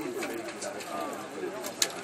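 Background chatter of several voices while timber beams are handled, with one sharp knock near the end.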